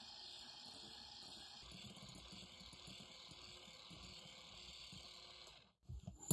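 Electric hand mixer running faintly and steadily, its wire beaters whipping egg-white meringue to soft peaks; the sound stops just before the end.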